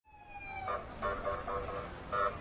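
Emergency siren on a police convoy: a tone gliding down in pitch, then a quick pulsing siren pattern, over the low rumble of the vehicles' engines.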